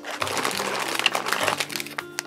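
Foil blind-bag packets crinkling and rustling as a hand rummages among them inside a fabric bag and pulls one out.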